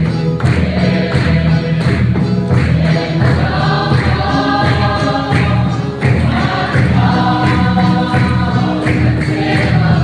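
A congregation singing a gospel hymn together, clapping hands and beating a drum in a steady rhythm, with electronic keyboard accompaniment.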